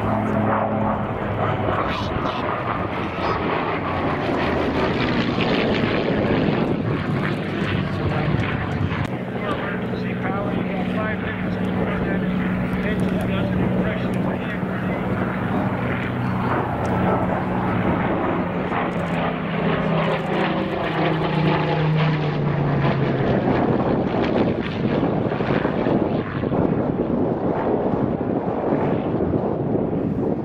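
Bell P-63 Kingcobra's Allison V-1710 V12 engine and propeller droning steadily in a flyby. The engine note drops in pitch a little past twenty seconds in as the plane passes.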